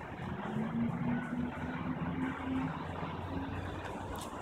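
An engine's steady low hum with a slightly wavering pitch. It comes in just after the start and fades a little before the end, over an even background hiss.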